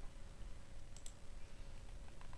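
A single computer mouse click about a second in, against faint room noise.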